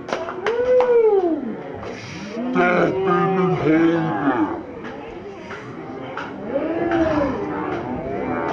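Men's voices hollering long, wordless whoops whose pitch rises and falls, several times, over crowd chatter.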